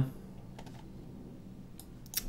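Faint computer keyboard typing, with a few light key clicks near the end, over a low steady hum.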